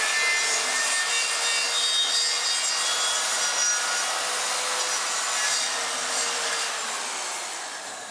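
Electric circular saw cutting through the chest of a pig carcass: a steady motor whine under rough sawing noise. It fades away near the end as the cut finishes and the saw winds down.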